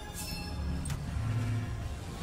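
Online video slot's game audio: a steady low drone of background music, with short sparkling whoosh effects about a quarter second and about a second in.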